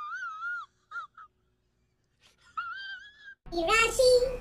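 A high-pitched, wavering wailing cry, heard twice: once in the first second with a couple of short yelps after it, and again near the end.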